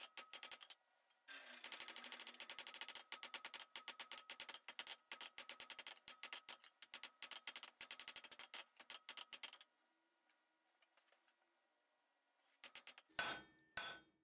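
Hand hammer striking red-hot steel on an anvil in a rapid run of light blows, several a second, finishing a forge weld that joins a flat-bar blade to its square-bar handle. The hammering stops about ten seconds in, and a few more blows come near the end.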